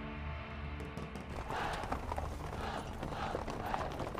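Hooves of several horses clip-clopping on hard ground as mounted riders move off, beginning about a second in, over a low, steady music drone.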